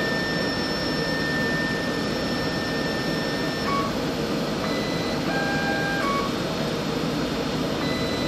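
Laboratory analyzer with an autosampler carousel running: a steady mechanical whir with a thin steady tone through the first half, and a few short electronic tones near the middle.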